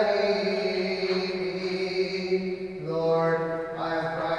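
A single man's voice singing Byzantine chant in long held notes, stepping down to a lower pitch about three seconds in.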